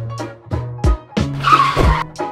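Upbeat background music with a steady drum beat and bass. Near the end a short car tyre-screech sound effect comes in, with a falling squeal, as a toy pickup truck pulls into view.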